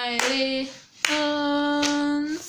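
A woman singing a hymn unaccompanied, stepping up through two short notes to one long held note, with a few hand claps.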